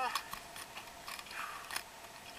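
A scatter of light clicks and knocks, about half a dozen, from scuba gear being handled.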